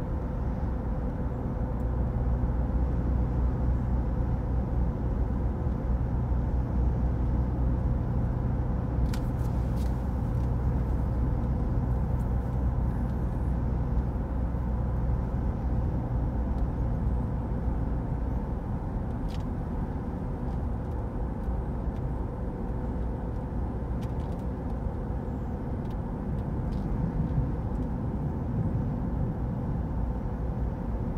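Steady road and engine noise heard inside a moving car's cabin. There is a continuous low rumble with a faint steady hum, and the deepest part of the rumble eases about halfway through.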